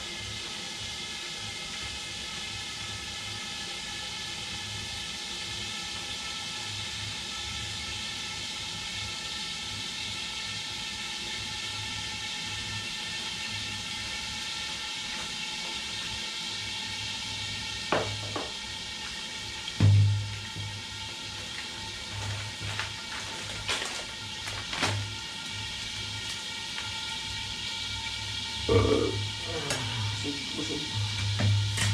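Steady hiss of food cooking under the lid of a wok on a gas burner, under quiet background music. A few sharp knocks and one loud thud come about two-thirds of the way through, and another thud comes near the end.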